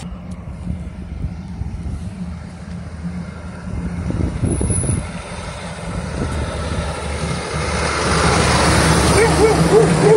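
Loaded log truck's diesel engine approaching and passing close, getting louder over the last few seconds, with a pickup truck driving by a few seconds in.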